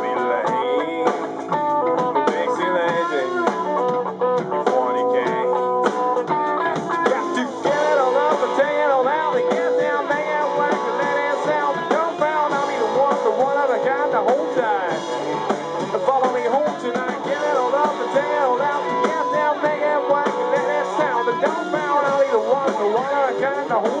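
Rock band playing an instrumental passage live in a rehearsal room: electric guitars and drum kit, with a guitar line of bent, wavering notes from about eight seconds in.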